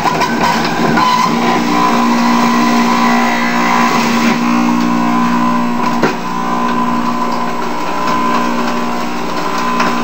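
Jack LaLanne Power Juicer's electric motor running steadily with a whirring hum while it shreds a carrot fed into the chute. A single brief knock about six seconds in.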